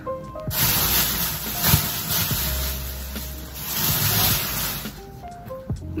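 Loud rustling of clothing being handled close to the microphone, starting about half a second in and lasting about four and a half seconds, over soft background music.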